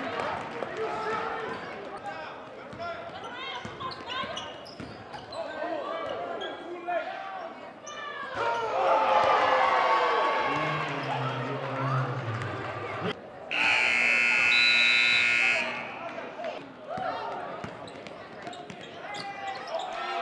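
Gymnasium scoreboard buzzer blaring for about two seconds partway through, the loudest sound. Around it are the sounds of a basketball game in a hall: a ball dribbling on the hardwood, sneakers squeaking and crowd chatter.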